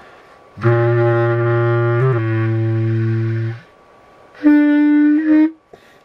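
A low single-reed wind instrument playing an improvised line: a long, low held note for about three seconds with a small pitch shift in the middle, then after a short pause a brief higher note lasting about a second.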